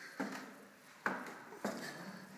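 Footsteps climbing wooden stairs: three separate footfalls, a little under a second apart, each a short knock that dies away quickly.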